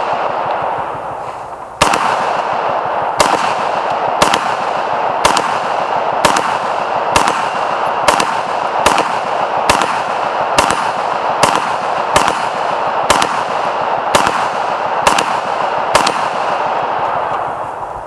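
Head Down Operator AR-15 rifle in 5.56 firing about sixteen semi-automatic shots, evenly paced at roughly one a second, as a magazine is emptied.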